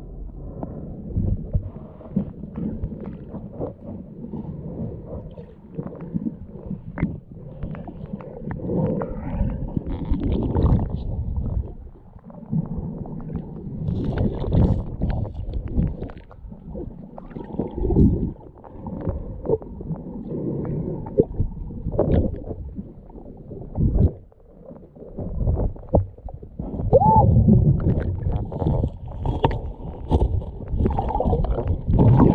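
Muffled underwater rumble and sloshing picked up by a camera held under the creek water, with scattered short knocks and clicks as stones and gravel on the creek bed are moved by hand.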